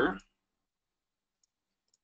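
The last word of a man's voice trails off at the start. Then there is near silence with two faint computer mouse clicks, about a second and a half and two seconds in, as checkboxes are ticked on screen.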